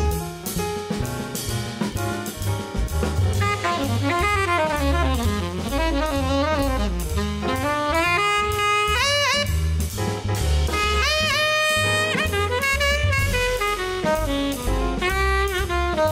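Jazz quintet playing a swinging instrumental break: a tenor saxophone solo, with some bent notes, over grand piano, upright bass and drum kit. The saxophone line comes in about three seconds in.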